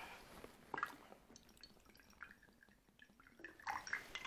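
Mostly quiet room with a few faint, short clicks and ticks scattered through.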